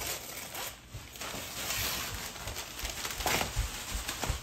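Wrapping paper being ripped and crinkled by hand as a gift is unwrapped, in several tears, the longest about halfway through and another shortly before the end.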